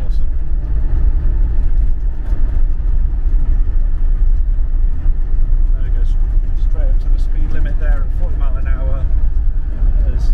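Cabin noise of a 2002 Land Rover Defender 90 on the move: its Td5 five-cylinder turbodiesel runs steadily under a low, even drone of engine and road rumble, heard from inside the cab.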